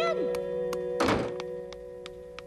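A cartoon door shutting with a single thunk about a second in, over background music of held notes with faint regular ticks.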